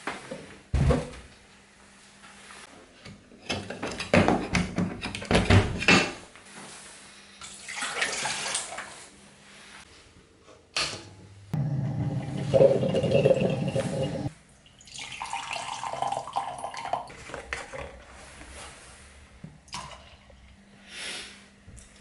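Drip coffee maker being set up and run: knocks and clinks of the glass carafe and plastic parts being handled, water sounds, then a loud stretch of the machine bubbling and gurgling as it brews, about twelve seconds in.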